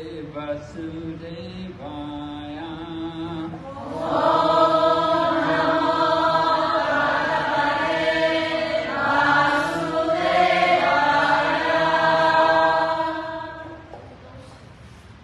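A man chanting devotional invocation prayers into a microphone on long held notes. About four seconds in, the chant grows much louder and fuller as a group of voices joins in, and it stops shortly before the end.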